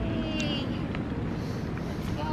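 Wind buffeting a phone microphone outdoors: a steady low rumble with no words.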